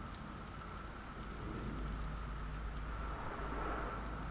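A steady hiss and low rumble with scattered faint crackles and a faint held tone, forming an ambient noise texture.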